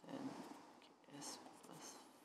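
A pen writing on paper, its strokes quiet, under soft mumbled speech under the breath.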